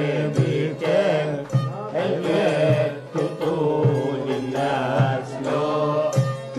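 Iraqi maqam chalghi ensemble of santur and joza (spike fiddle) playing a peste in penjikah mode to the 10/16 jurjina rhythm: a wavering, ornamented melody line over a regular beat of struck notes roughly twice a second.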